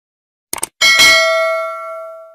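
Bell-like ding sound effect: two quick clicks, then a single struck chime a little under a second in that rings with several tones and fades away over about a second and a half.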